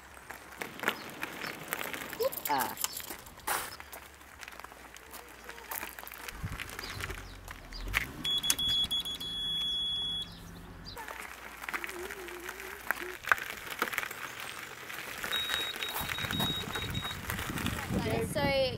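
Mobility scooter's electronic horn giving one steady high beep lasting about two seconds, about eight seconds in, then a run of short beeps near the end. A low rumble comes just before the first beep.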